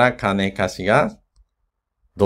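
A man speaking for about a second, then the sound cuts off abruptly to dead silence, as at an edit.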